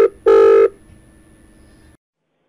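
Telephone ringback tone heard by the caller: a double ring of two short buzzing tones in quick succession, the second ending well before a second in, followed by a low line hiss.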